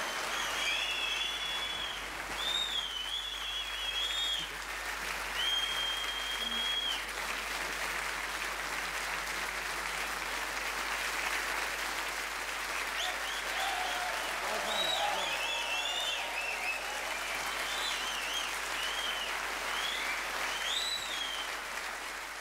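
A large theatre audience applauding steadily, with shrill whistles over the clapping in the first few seconds and again in the second half, and some shouts around the middle.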